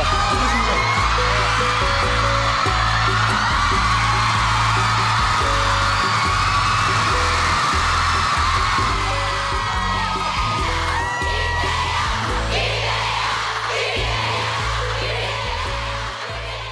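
Live concert audio from a stadium show: music playing under a large crowd screaming and cheering.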